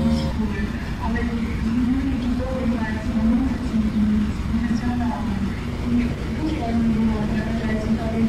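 A held musical chord stops just after the start. A voice then goes on speaking in a low, wavering tone over a steady low rumble.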